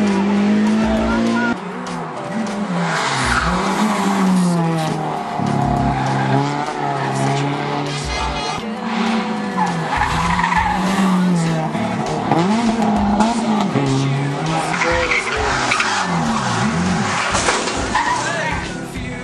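Competition cars driven hard through a hairpin one after another, engines revving up and dropping back again and again with gear changes and lifts, with tyres squealing and skidding.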